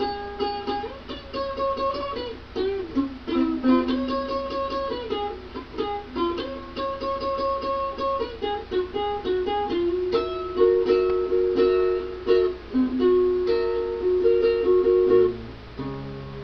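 Solo instrumental break on a plucked string instrument: single picked notes and short melodic runs, some notes bent or slid in pitch, others held. A lower bass-note figure comes in near the end.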